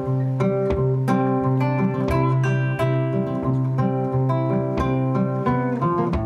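Acoustic guitar fingerpicked in a quick, even rhythm over a held bass note: an instrumental passage with no singing.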